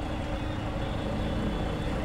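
Steady road and engine noise heard inside the cabin of a moving van.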